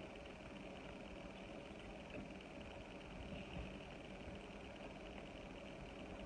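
Quiet room tone with a steady hiss, and a few faint, soft sounds of eating with the hands: fingers picking food off a plate and quiet chewing.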